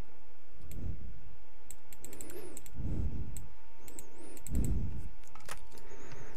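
Scattered clicks of a computer mouse and keyboard, in small clusters, with a few soft low thumps and a faint steady electrical hum underneath.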